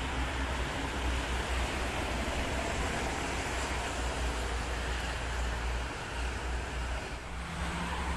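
Steady rush of toll-road traffic: tyre and engine noise from a passing tour bus, box truck and cars, with a low rumble underneath and a brief dip in level about seven seconds in.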